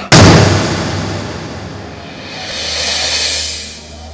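A sudden loud boom-like hit that fades over about two seconds, then a swelling whoosh that peaks about three seconds in and fades away: a dramatic sound effect laid into the film's soundtrack.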